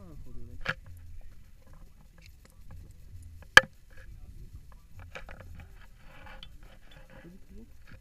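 Wind buffeting the camera's microphone with a low rumble, broken by two sharp clicks, about a second and three and a half seconds in, the second much louder: gear being handled close to the microphone.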